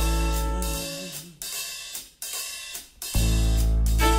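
Jazz drum kit taking a short solo break: the band's held chord fades out within the first second, leaving a few cymbal crashes and drum strokes roughly a second apart. The full band comes back in with a sustained chord a little after three seconds in.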